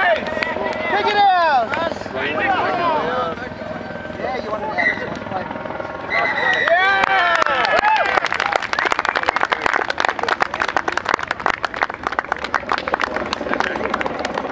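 Men shouting on an open field, then from about eight seconds in, a small crowd clapping over continued talk.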